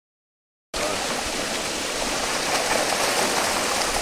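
Water churning and splashing as a mass of crowded fish thrash in a pond net: a steady rushing wash that begins suddenly under a second in and grows a little louder about halfway through.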